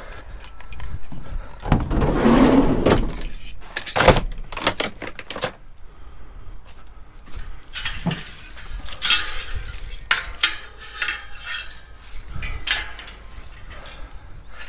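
Scrap being handled: a tangle of Christmas light strings and a metal bicycle wheel rattling and clinking, with irregular clatters and knocks, the sharpest about four seconds in.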